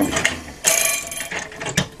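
Metal rattling and clicking from a scroll saw's quick-release lever and blade clamp being worked by hand: a rasping rattle about half a second in, then a sharp click near the end. A faint steady tone sets in during the second half.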